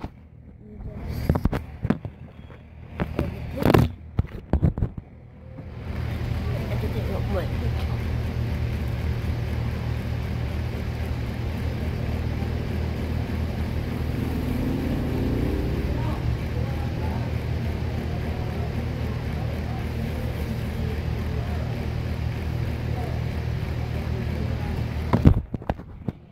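A few knocks and handling bumps, then a steady low mechanical drone, like a motor running. It starts suddenly about six seconds in and cuts off shortly before the end.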